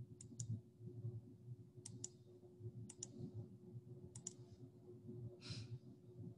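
Four pairs of faint, sharp clicks, spaced about a second apart, over a low steady hum. A short soft rustle comes near the end.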